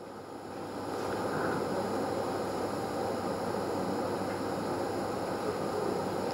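Steady background room noise with no speech, a little louder from about a second in.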